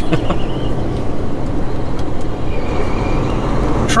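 Semi-truck's diesel engine running and road noise heard inside the cab as the truck drives along, a steady low rumble.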